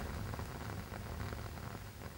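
A small handheld gas torch flame burning with a low, steady hiss.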